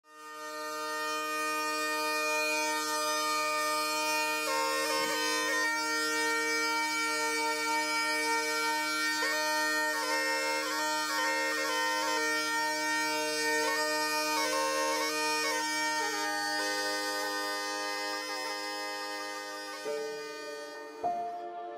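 Bagpipe playing an ornamented melody over steady held drones, fading in at the start.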